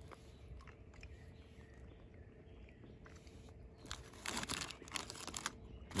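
A faint quiet stretch, then a short run of close crunching and crinkling noises about four seconds in, lasting a second or so, as a milk chocolate bar is handled on its opened wrapper and eaten.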